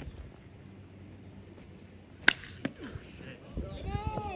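An aluminium baseball bat striking a pitched ball: one sharp, ringing ping a little over two seconds in, followed by a smaller click. Voices begin shouting near the end.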